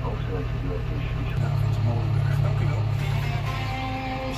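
Tractor engine drone heard inside the cab, its note stepping up about a second and a half in as the tractor turns at the end of the row. A cab radio plays music and voices over it.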